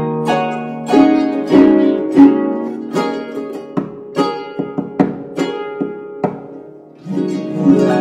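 Solo lever harp being played, a Cithara Nova: plucked strings ringing and decaying, a flowing run of notes that thins to sparser single notes, then a fuller, louder chord near the end.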